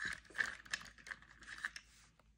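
Coloured pencils being handled: a quiet run of light clicks and rustles as pencils are picked up and knock against each other while the right blue one is sought out.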